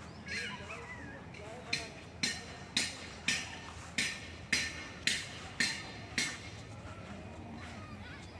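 A run of about nine sharp, hissy clicks, roughly two a second, each dying away quickly.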